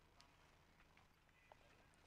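Near silence, with two faint clicks.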